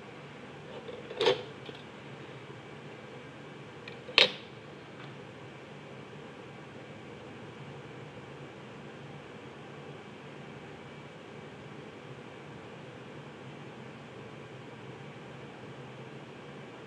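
Two sharp knocks about three seconds apart as a plastic set square and ruler are set down on a drawing board, then only a steady low hiss.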